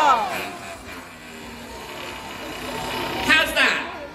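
Voices: a drawn-out exclamation falling away at the start, low crowd murmur, then a short higher call about three and a half seconds in.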